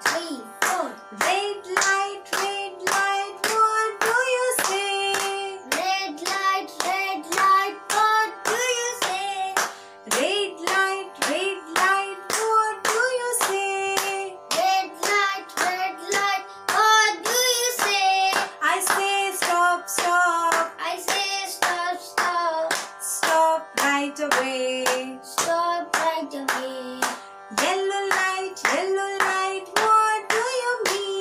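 A woman and a boy sing a children's traffic-lights song while clapping their hands in a steady beat, about two claps a second, over backing music.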